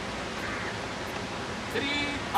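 Steady outdoor background noise, an even hiss with no distinct event. A man's voice starts near the end.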